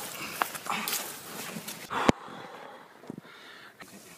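Rustling and knocking as a big carp is handled on an unhooking mat. A sharp click about two seconds in is the loudest sound, and after it things go quieter.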